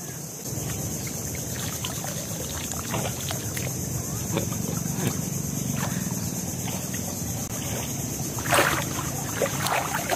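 Water sloshing and lapping as a person wades chest-deep and works his hands through the water, with a louder splash near the end.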